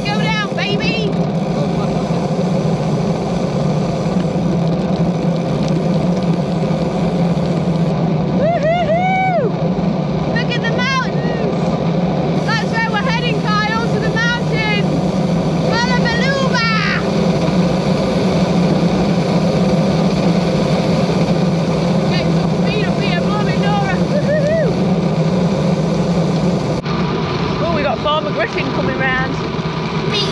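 Wind roaring over the microphone of a bike-mounted camera on a fast bicycle descent, a steady loud rush with a deep hum beneath it. Short, high, swooping sounds come through it in two spells, starting about eight seconds in and again in the later part.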